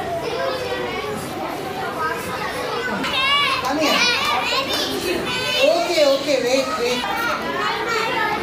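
A crowd of young children's voices talking and calling out together, high-pitched and overlapping, getting louder around the middle.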